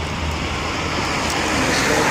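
A car passing close by on the road, the rush of its tyres and engine growing louder toward the end, over a steady low rumble of traffic.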